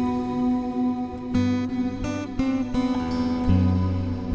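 Solo mahogany dreadnought acoustic guitar played fingerstyle: single plucked notes and soft chords that ring on. New notes come about every quarter to half second from the second half onward.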